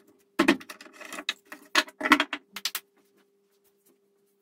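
Knocks and clatter of wooden pieces and a sharpening-stone holder being picked up and set down on a wooden workbench, in several quick groups that stop about three seconds in. A faint steady hum lies underneath.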